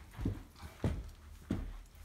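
Footsteps along a carpeted hallway: three dull thuds, about two-thirds of a second apart.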